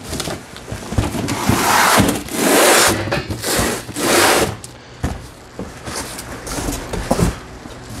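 Cardboard boxes being handled and pulled open, with scraping and rustling of cardboard and packing material in several bursts, the loudest in the first half.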